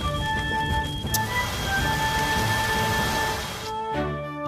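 Hand-held fire extinguisher spraying in a steady hiss that starts sharply about a second in and stops shortly before the end, over background music.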